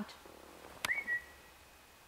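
A single short whistled note to call a dog, a sharp click just before it: the tone rises briefly, then holds steady for about half a second.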